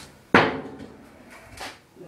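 Stunt kick scooter landing on a concrete floor after a hop: one sharp clatter about a third of a second in that dies away quickly, with a fainter knock a little over a second later.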